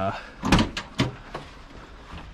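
Pickup truck tailgate being unlatched and let down: a sharp clunk about half a second in, then a few lighter knocks.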